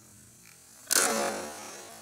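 An 18-inch khukuri chopping into a full plastic water jug: one sudden sharp hit about a second in, followed by splashing water that dies away.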